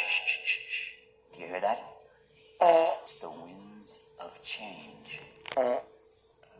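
Short, wordless vocal sounds from animated cartoon characters, cut into choppy snippets a second or so apart, one sliding low, over a faint steady hum. They play through a laptop speaker.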